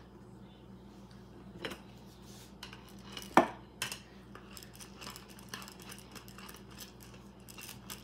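A wooden rolling pin on a wooden pastry board: a few knocks, the sharpest about three and a half seconds in, then light clicking as it rolls over dough.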